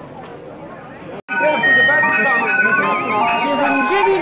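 Street murmur, then after an abrupt cut about a second in, a barrel organ playing a tune loudly with held notes and a wavering high melody.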